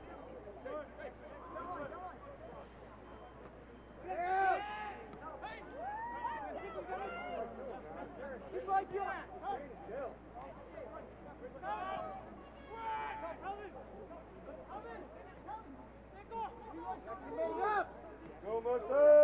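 Shouts and calls from voices around the soccer pitch, heard faintly and off-mic: short scattered cries with the loudest call about four seconds in, over a low background of distant chatter.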